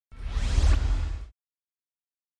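A whoosh sound effect for a logo reveal: a deep low rumble under a rising sweep, lasting just over a second and cutting off suddenly.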